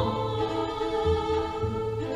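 Soprano voice singing over a string quartet and harp, with low string notes pulsing underneath.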